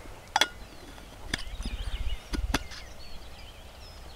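Thermos cap and cup clicking and knocking against the flask as it is handled: one sharp click about half a second in, then several lighter knocks over a low handling rumble, with small birds chirping faintly in the background.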